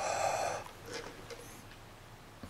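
A short puff of breath blown onto a carbon dioxide meter's sensor, lasting about half a second, to push its CO2 reading up.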